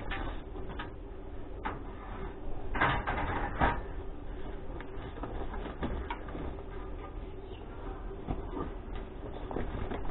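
Clatter and knocks of long metal bars and poles being handled and dropped onto a scrap pile, with the two loudest bangs about three seconds in.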